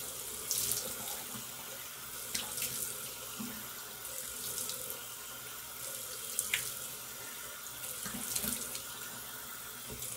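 Bathroom sink tap running steadily while a face mask is rinsed off by hand, with irregular splashes every second or two as water is scooped onto the face.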